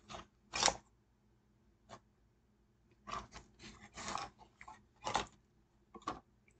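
Factory-wrapped product packaging being handled and opened by hand: short crinkling, scraping rustles of plastic wrap and cardboard. There is one sharp rustle just under a second in and a busier run of rustles in the second half.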